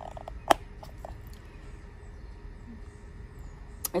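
A single sharp click about half a second in, with a few fainter ticks, over quiet steady background noise and some faint high chirps.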